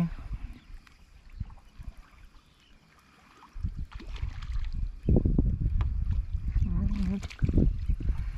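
Low rumbling noise of wind and movement around a fishing kayak, quiet at first and much louder from about three and a half seconds in. A brief hum-like voice sound comes near the end.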